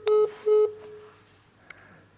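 Telephone handset beeps: two short electronic tones about half a second apart, following a third just before, the tones of a phone call being ended. A faint click near the end.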